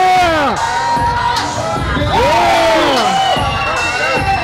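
Crowd of spectators shouting and cheering over background music, with two long rising-and-falling shouts: one at the start and another about two seconds in.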